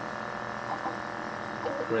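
Hyrel Engine HR 3D printer running, its cooling fan and motors giving a steady hum of several tones.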